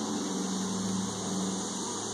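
Steady low droning hum of honeybees flying around an opened hive, even in pitch and level, with no clicks or knocks standing out.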